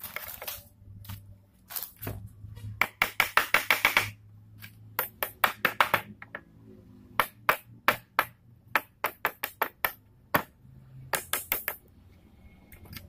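A homemade steel hammer knocking sharply and repeatedly against a wooden pallet. Quick runs of rapid taps alternate with slower single knocks, over a steady low hum.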